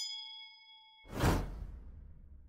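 Subscribe-animation sound effects: a bright bell ding, the sound of the notification bell being clicked, ringing for about half a second, then about a second in a loud whoosh with a deep rumble that fades away.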